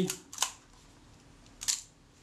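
Two sharp mechanical clicks, about a second and a quarter apart, from a Kodak Retina IIIC's Synchro-Compur leaf shutter being worked with the shutter set on B.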